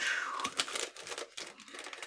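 Crinkling and rustling of a sterile medical packet's wrapper as it is handled in the hands, strongest in the first second and fainter after.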